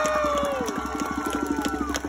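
Audience cheering and applauding: rapid clapping under several long, falling whoops from voices in the crowd, fading toward the end.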